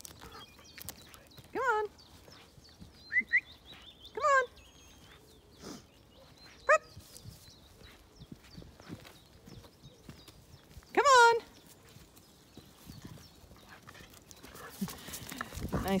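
A dog whining in short, rising, high-pitched calls, about six of them spread over the stretch, the loudest a little past the middle.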